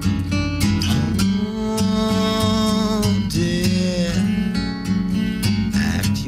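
Live acoustic guitar strummed steadily, with a man singing over it; the guitar uses a Sharpie as a makeshift capo, which leaves it a little buzzy.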